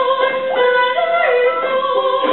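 Mixed choir singing in parts, holding notes and stepping from one pitch to the next.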